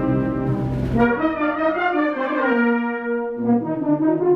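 Brass band playing a classic-style pasodoble: a melody of held brass notes that move in pitch.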